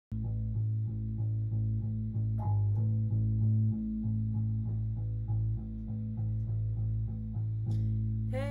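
Solo electric bass guitar, plucked in a steady repeating line of low notes, about three a second, each held until the next.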